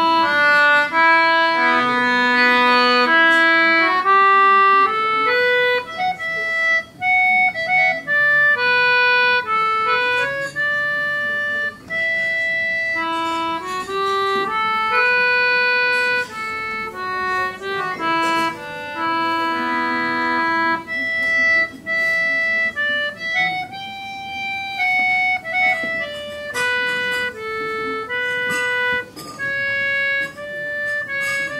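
Concertina playing a slow air: one unaccompanied melody of held reed notes, moving unhurriedly from note to note.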